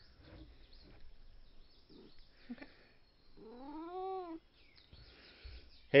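A single drawn-out animal call, about a second long, rising then falling in pitch, about three and a half seconds in.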